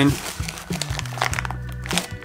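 Clear plastic blister packaging crinkling in irregular crackles as a packaged coil of braided steel nitrous feed line is handled, over background music.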